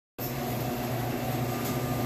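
Steady low machine hum, an even drone with no changes in pitch or rhythm.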